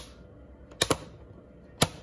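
Front-panel METER switch on an Ameritron AL-811H linear amplifier being flicked, giving sharp clicks: a quick double click just under a second in and another near the end. Underneath is the amplifier's faint steady fan. The meter won't hold in the high-voltage position, which the owner puts down to dirty switch contacts, though he is not sure.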